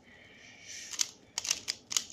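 Plastic pyraminx puzzle being turned by hand: a soft sliding scrape of its pieces, then about five quick, sharp clicks in the second half as its faces are twisted in turn.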